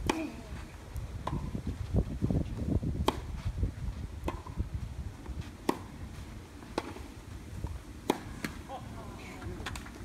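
Tennis rally: a string racquet strikes the ball about every one to one and a half seconds, with fainter ball bounces between, over a low rumble.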